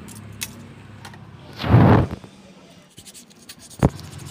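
A utility knife slicing through a polyfoam sheet along a steel ruler: one loud scraping cut about halfway through, lasting about half a second. A sharp click comes just before the end.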